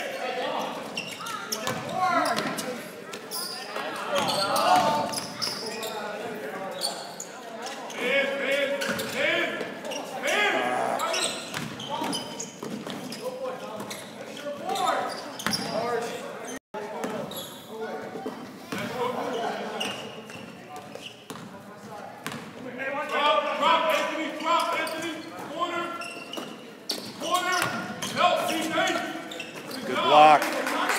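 Basketball dribbled and bouncing on a hardwood gym floor during play, over indistinct talking and shouting from players and the sideline. The sound cuts out for an instant just past halfway.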